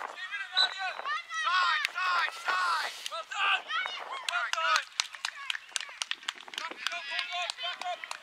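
Voices calling out across an open sports field during a youth soccer game: short shouts from players and spectators, none close enough to make out words. In the second half a quick run of sharp clicks and taps joins in.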